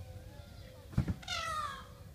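A brief double knock about a second in, then a single peafowl call lasting about half a second, its pitch falling slightly.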